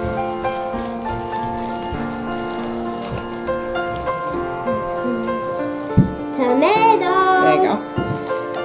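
Background music of steady held notes. About six seconds in there is a sharp knock, and near the end a brief voice with a rising and falling pitch.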